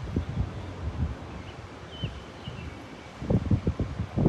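Wind buffeting the microphone in uneven gusts, with a couple of short high chirps about two seconds in.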